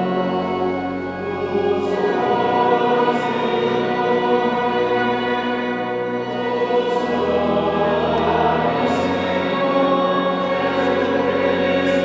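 A choir singing in a church, voices holding long sustained chords.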